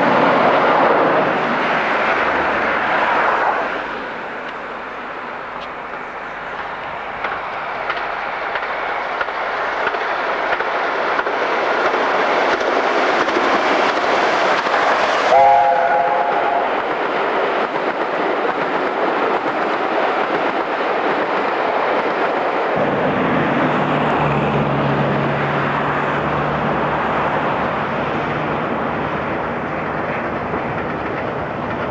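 Continuous steam train running noise, rumbling and rattling, that changes abruptly a few times. About halfway through comes a short whistle chord of several notes sounding at once, typical of an LNER A4's three-chime whistle.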